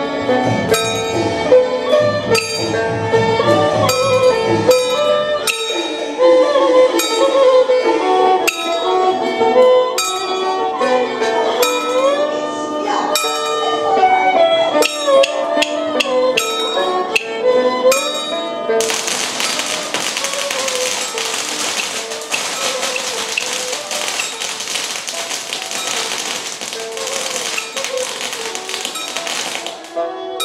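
Taoist ritual music: a pitched melody with sliding notes over sharp, regular percussion strokes. About two-thirds of the way through, a dense, steady high rattle joins and carries on to the end.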